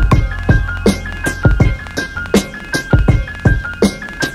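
A boom bap hip hop beat built without samples, playing back in full. A chopped drum break hits about twice a second over a one-note bass, with a melody layer of piano, organ and strings on top.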